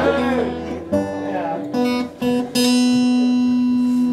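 Acoustic guitar picking a few separate notes, each ringing on, then a chord held from about two and a half seconds in.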